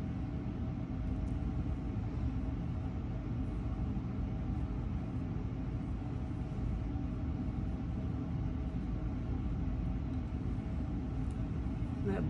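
A steady low rumble with a constant hum of several held tones, and a few faint ticks over it.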